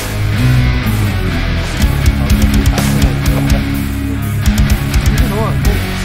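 Rock music with electric guitar, a sustained bass line and drum hits.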